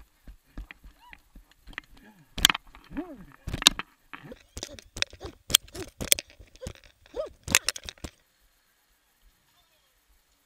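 Running footfalls and knocks picked up through a helmet-mounted camera, irregular and sharp, with a few short shouts from people nearby. The sound drops away about eight seconds in.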